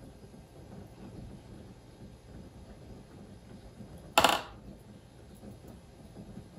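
A metal spoon scooping wet coconut coir from a plastic tub, mostly soft, with one short sharp clink about four seconds in.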